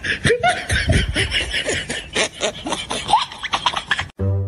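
Laughter in quick repeated bursts, with short rises and falls in pitch.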